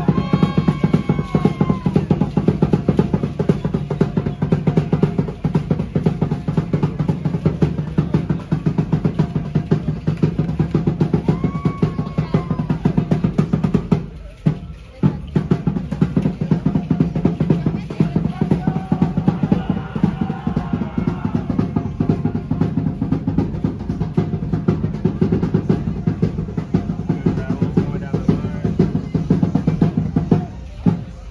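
Fast, driving drumming with dense rapid strikes, live street percussion for an Aztec-style dance show, breaking off briefly about halfway through before carrying on.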